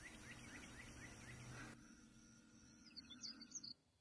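Very faint bird chirping: a short rising note repeated about four times a second over a low steady hum, cutting off suddenly a little under two seconds in. A few faint higher chirps come near the end.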